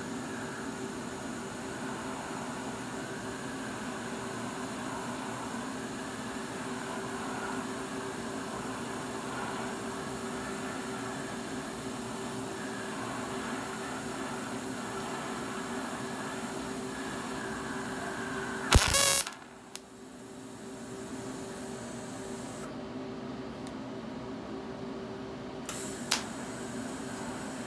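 TIG welding arc running steadily with a hissing buzz while a power steering hose fitting is welded. About nineteen seconds in there is a short loud crack, after which the sound drops briefly before a steady hiss returns.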